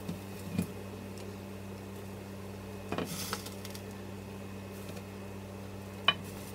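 Soft knocks and a short rustle about three seconds in as slices of grilled halloumi are laid onto a plate of salad with kitchen tongs. A steady low hum runs underneath.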